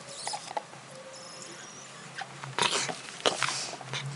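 A black Labrador retriever chews and mouths a spiky rubber ball, with wet clicks and snuffling breaths. A few louder noisy bursts come in the second half as the ball is worked loose from its mouth.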